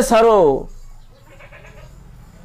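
A man's voice speaking, a drawn-out, wavering phrase that trails off about half a second in, leaving a low steady hum.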